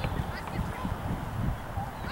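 Geese honking in a few short calls, with wind buffeting the microphone as a heavy low rumble.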